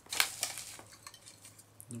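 A few sharp clicks and light rattles of a small white plastic charger plug and its cable being handled and lifted out of a box lined with bubble wrap, the loudest click just after the start.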